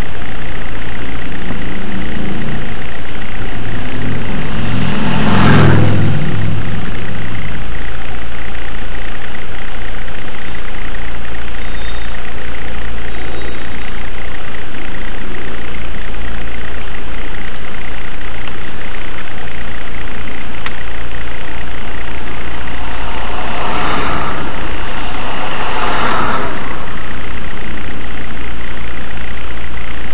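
Car engine idling at a standstill, heard from inside the cabin through a dashcam microphone as a steady low rumble. A deeper engine note swells and fades over the first seven seconds, and short sharp noises come about five seconds in and twice near the end.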